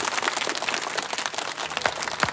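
Applause: many hands clapping together in a dense, steady run of claps.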